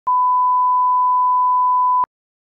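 Television test-card tone: one steady, unwavering beep lasting about two seconds, with a click as it starts and another as it cuts off.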